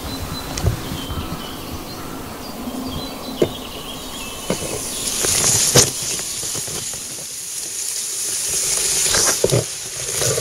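Reeds and long grass brushing and scraping against a camera held low at the side of a drifting boat. The rustling swells to a loud hiss about halfway through and again near the end, with sharp knocks as stems strike the microphone.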